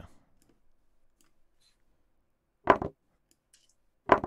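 A short wooden click from the online chess board's move sound, once about three-quarters of the way through, with near silence around it.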